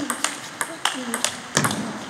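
Table tennis rally: a celluloid-type ping-pong ball struck back and forth, a quick irregular series of sharp ticks as it hits the rackets and bounces on the table, the loudest hit about one and a half seconds in.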